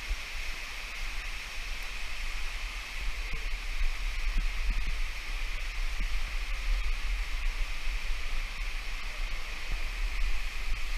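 Steady rush of stream water running through a rocky canyon, getting a little louder a few seconds in, under a low rumble on the camera microphone.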